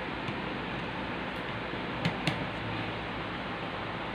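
Steady room hiss with two light clicks about two seconds in, plastic toy cars being set down and adjusted on a tabletop.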